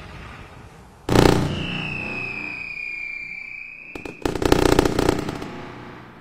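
Fireworks: a shell bursts with a boom about a second in, a long whistle sinks slightly in pitch, and a dense crackling burst follows about four seconds in, then fades.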